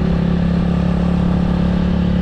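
Motorcycle engine running steadily at a low cruising speed, a constant drone with no change in pitch.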